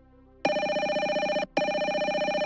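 Incoming-call ringtone of the GoTo softphone: a trilling electronic telephone ring, one burst of about a second, a short break, then a second burst.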